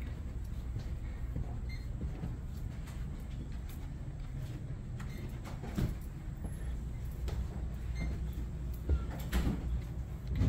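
Muffled footsteps going down carpeted wooden stairs over a steady low rumble, with a few soft knocks in the second half.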